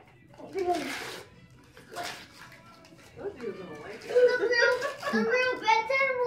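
Paper rustling in two short bursts, then from about three seconds in a drawn-out, wavering high vocal sound, a child's voice or a cat, running to the end.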